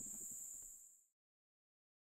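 Insects chirring in a steady high pitch, fading out about a second in, followed by complete silence.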